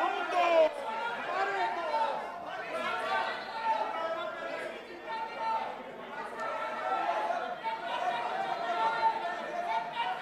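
Many members of parliament talking and calling out over one another at once in a large chamber, a general commotion in the house.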